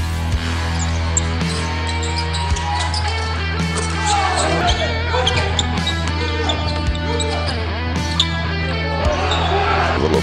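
Background music with a steady bass line over game sound: a basketball bouncing on the court as it is dribbled, with short sharp impacts scattered through.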